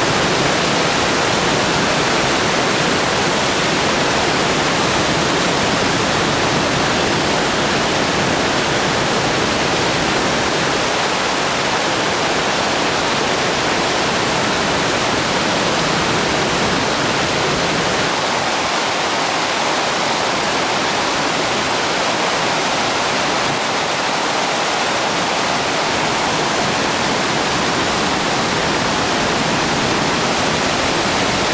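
Small waterfall close to the microphone: a steady, loud rush of falling water.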